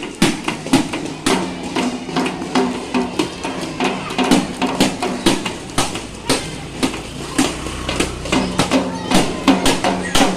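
Children beating toy drums with sticks: a ragged, uneven stream of strikes, several a second, from many drums at once, with a steady low hum underneath.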